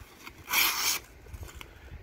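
The recurve blade of a Zero Tolerance 0920 folding knife slicing through a sheet of paper in one short swish, about half a second in. The factory edge is pretty sharp but a little toothy near the tip, and feels like it could use a touch-up.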